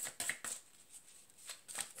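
A deck of tarot cards being shuffled by hand: a quick run of card flicks and slaps, a short lull about half a second in, then more shuffling near the end.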